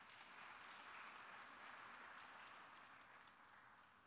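Faint audience applause, a soft even patter that swells briefly and then dies away over a few seconds.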